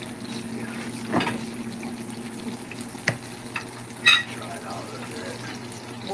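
Burgers frying in a skillet with a low sizzle over a steady hum, broken by a few sharp clinks of a metal spatula on dishes. The loudest clink, with a short ring, comes about four seconds in.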